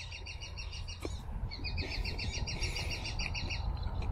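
A bird chirping in a quick, even series of high notes, about ten a second, in two runs with a short break about a second in, over a low steady background rumble.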